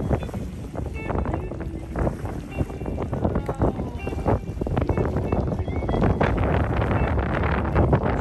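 Wind buffeting the microphone over the rush and slap of water along the hull of a sailing boat under way, uneven and gusty in loudness.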